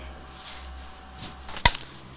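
Faint rustling of a plastic bottle and a plastic bag being handled, then a single sharp knock a little over one and a half seconds in.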